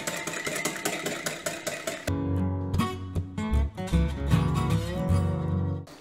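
A wire whisk beating egg yolk and mustard for mayonnaise in a glass bowl, making rapid, regular clicks against the glass. About two seconds in, acoustic guitar music comes in and is louder than the whisking.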